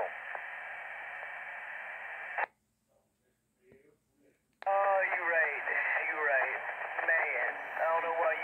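Ham radio transceiver speaker: steady static hiss of an open channel, cut off abruptly with a click about two and a half seconds in as the transmission ends. After about two seconds of silence another click and a voice come through the radio.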